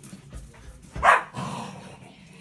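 A German Shepherd giving a single loud bark about a second in, during rough play with another German Shepherd, the sound trailing off over the following second.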